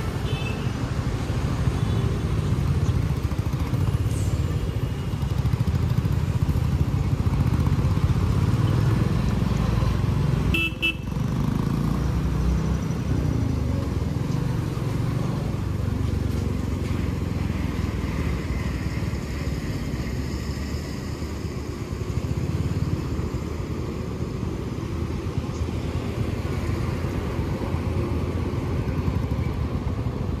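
Motorcycle engine running under way, with wind and road noise from the rider's seat, beside heavy truck traffic. A short horn toot sounds about ten seconds in.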